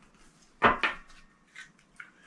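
A couple of light knocks on a tabletop as a tarot card deck is handled and set down, close together about half a second in, with a fainter tap near the end.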